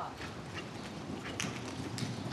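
Horse's hoofbeats on soft arena dirt as it gallops in at the finish of a barrel racing pattern.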